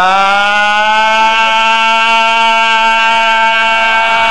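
A man's voice holding one long chanted note, sliding up into it at the start and then steady.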